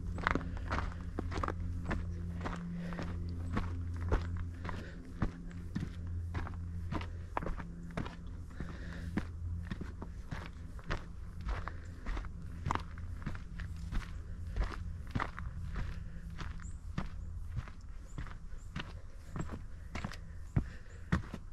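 Footsteps walking at a steady pace, about two steps a second, on a dry dirt forest trail, with a low steady hum underneath that fades in the second half.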